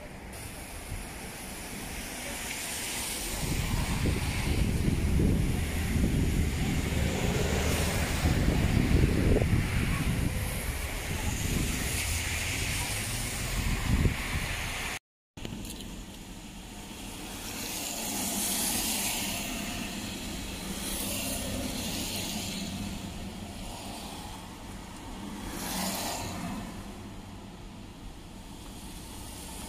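Urban street traffic: vehicles passing, with a loud low rumble for about ten seconds in the first half. The sound drops out briefly about halfway, and quieter passing cars follow.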